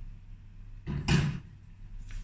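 A single loud thud about a second in, lasting about half a second, over a low steady hum.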